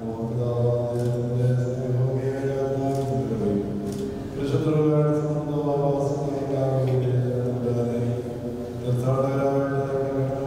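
A man chanting a liturgical prayer into a handheld microphone, in long held phrases on a low, steady pitch. A new phrase starts about four and a half seconds in and again near the end.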